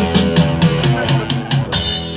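Live rock band playing: a run of drum hits, about four a second, over bass guitar and electric guitar, with a cymbal crash near the end.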